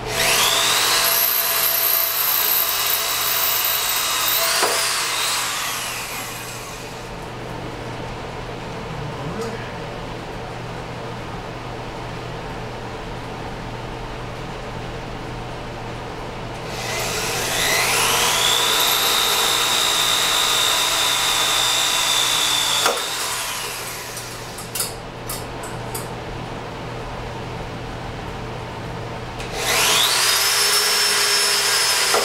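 Cordless drill boring into the steel frame of a wheelchair base. Its motor spins up to a steady high whine for about five seconds and winds down, runs again for about six seconds in the middle, and starts once more near the end.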